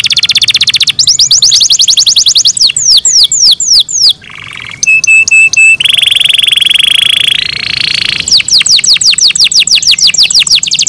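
Domestic canary singing a loud, continuous song of rapid trills and down-sweeping whistled notes. There is a brief break about four seconds in, then a few clipped notes and a long, even trill that steps up in pitch before the falling sweeps return.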